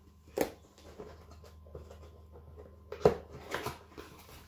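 Handling noise from a cardboard accordion box: a sharp knock about half a second in, then a louder knock and a few rustling bumps about three seconds in.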